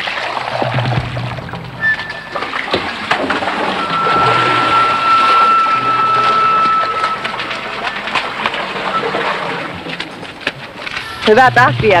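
Water sloshing and splashing from wooden buckets carried at a run and tipped into a trough, under background music with a long held high note in the middle.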